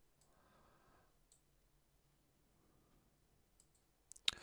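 Near silence, with a few faint computer mouse clicks: one just after the start, one about a second in, and two close together near the end.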